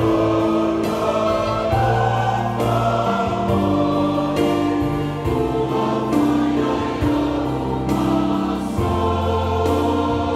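Church congregation singing a Samoan hymn in several voice parts, slow, with long held notes, accompanied by an electronic keyboard.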